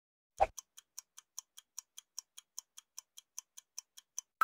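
Clock-ticking sound effect, about five even ticks a second, serving as a countdown timer in a self-test quiz. It follows a short pop about half a second in.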